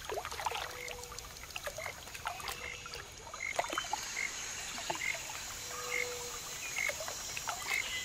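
Waterside evening ambience: frogs calling, one short call about every second, over a steady high insect drone and small water trickles and ticks.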